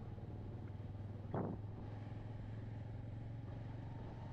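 Motorcycle engine running steadily at low speed with a low, even hum, heard from the rider's seat; a brief thump about a second and a half in.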